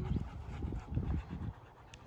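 Dog panting, about three breaths a second, fading near the end.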